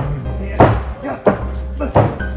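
Loud music with a heavy bass line and hard, evenly spaced drum hits about every two-thirds of a second, the strongest about half a second in.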